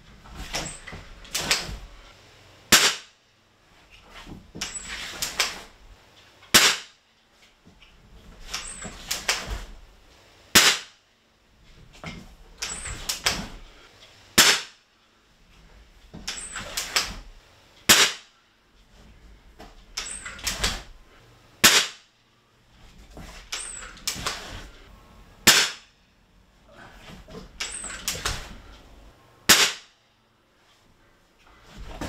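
Gamo Big Cat .177 break-barrel spring-piston air rifle, fitted with a full-power spring and high-performance seal, fired eight times at a steady pace of about one shot every four seconds. Each sharp shot is preceded by a run of clicks and clunks as the rifle is broken open, cocked and loaded for the next shot.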